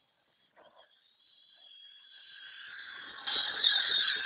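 RC car's 27-turn electric motor and drivetrain whining, growing steadily louder as the car drives up close, with crackling from the tyres over the ground near the end. A short knock about half a second in.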